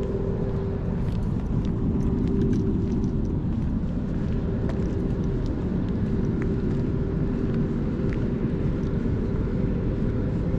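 A steady low mechanical drone with a constant hum, from machinery running without a break. Faint light clicks sound over it now and then.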